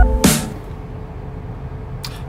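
Electronic music ends on a last beat, and a car engine then idles with a steady low rumble, heard from inside the cabin just after the ignition key is turned.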